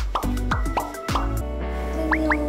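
Playful background music: short rising blips, about three to four a second, over a steady bass, giving way about a second and a half in to held chords.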